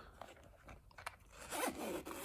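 Zipper of a small round foam-lined watch case being drawn closed by hand: a faint, scratchy run of zipper teeth with small ticks.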